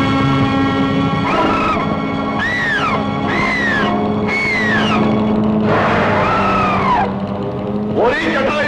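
Film score of long held notes, over which a bird of prey's screeching cry rises and falls four or five times.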